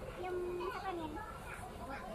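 Indistinct talking among diners in a busy fast-food restaurant. One high voice stands out in the first second or so, over general room chatter.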